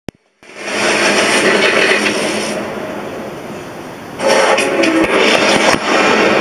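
Television documentary's opening title soundtrack playing through the set's speakers and picked up in the room: music with a loud rush of noise that swells up and fades, then a second crackling burst about four seconds in.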